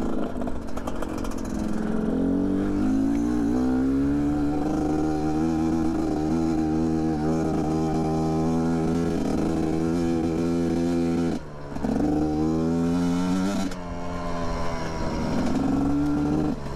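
GPX Moto TSE250R dual-sport motorcycle engine heard from on the bike, pulling up through the revs under throttle, then holding steady. Near the middle the revs drop off suddenly and climb again, and they dip and climb once more near the end.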